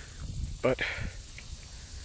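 Outdoor background: a low rumble and a faint, steady high hiss. A man says one short word a little over half a second in.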